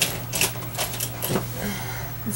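A few sharp, light clicks and taps, irregularly spaced about half a second apart, from small objects being handled on the craft table.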